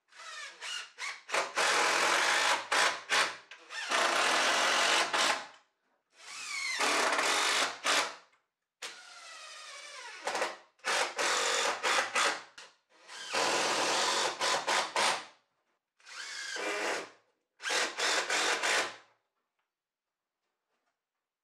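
Cordless drill driving screws into timber mezzanine joists: a few quick trigger blips, then about eight runs of one to two seconds each with short pauses between, the motor pitch shifting as each screw goes in.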